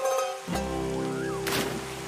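Background music with sustained chords over a steady rush of falling water. A splash about three-quarters of the way through, as a person lands feet-first in the pool below the waterfall.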